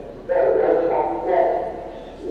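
A person speaking: one phrase of about a second and a half, starting a moment in.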